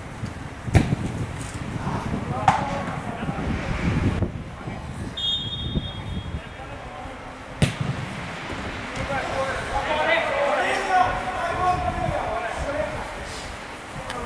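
Football match sounds on a snowy pitch: a ball being kicked, with sharp thuds about a second in, again near two and a half seconds and again past seven seconds. There is a brief high whistle about five seconds in, and players shout to each other in the second half, over a low rumble of wind on the microphone.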